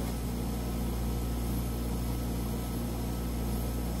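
Steady low mechanical hum with a faint hiss above it, typical of a cryostat's refrigeration unit running.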